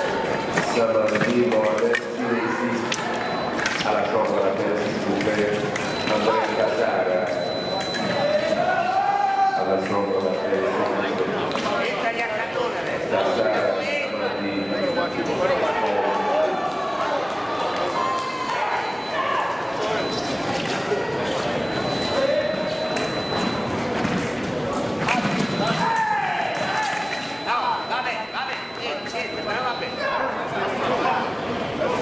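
Echoing hall ambience of people talking and calling out during a foil fencing bout, with scattered sharp clicks of blades and footwork on the piste and a faint high steady tone that comes and goes.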